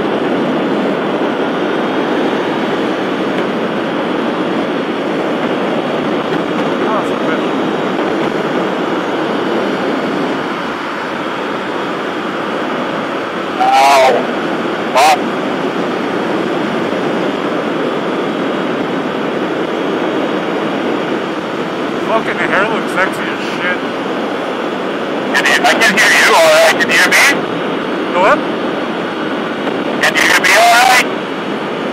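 Steady rush of wind and road noise from a motorcycle riding at highway speed, heard from the rider's camera. Short bursts of voice come in about halfway through and again near the end.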